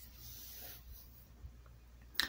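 Quiet room tone with a steady low hum and faint rubbing and handling noise from the handheld phone, with one small tick about a second and a half in.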